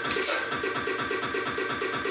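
Electronic dance track at about 127 BPM being loop-rolled in the DJ Player app: a short slice of the beat stutters, repeating about four times a second.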